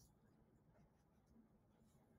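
Near silence, with faint scratches of a pen writing on paper.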